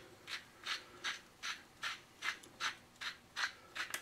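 Hand salt grinder being twisted to grind sea salt over steaks, a steady run of short, scratchy grinding strokes at about three a second.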